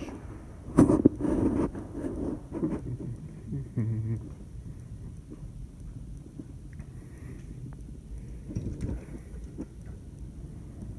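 Footsteps and handling noise from a handheld camera carried through a house, with a sharp click or knock about a second in. A few small clicks follow near the end as a glass-panelled back door is opened.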